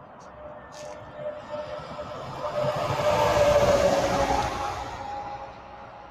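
A vehicle passing by at speed on a highway: tyre and engine noise swells up, is loudest around the middle, then fades away.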